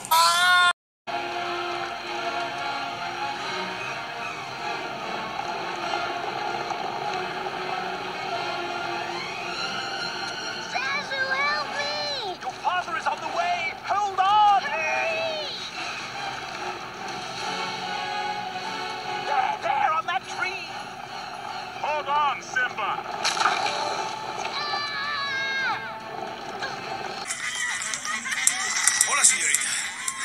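Film soundtrack of an animated wildebeest stampede: dramatic music over a steady rumble of the herd, with wavering cries through the middle stretch.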